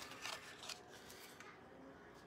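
Faint rustling of a flexible vinyl sheet being lifted and tipped, with loose fine glitter sliding off it onto paper: a few soft scrapes in the first second and a half, then near quiet.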